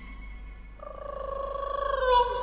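Experimental electronic music: a sustained buzzing tone with a fast flutter comes in about a second in and swells louder.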